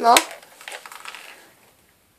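A boy says a short word, then faint rustling and light plastic clatter of a small toy blaster being handled close to the microphone, stopping about a second and a half in.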